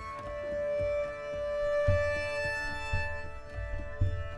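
Solo cello played live through electronic looping, layering several bowed parts into a cello-ensemble texture. A long bowed note is held through the first half over a recurring low thump.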